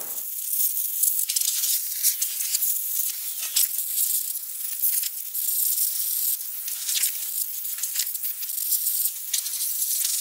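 Hose spray hitting an old box fan's sheet-metal frame and motor: an uneven hissing spatter that shifts as the spray moves over the metal, cleaning off the built-up dirt.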